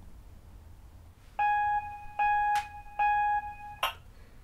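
Three short keyboard notes, all on the same pitch and about 0.8 seconds apart, as the intro to a song. A faint click falls between the second and third note, and a brief sharp sound comes just before the end.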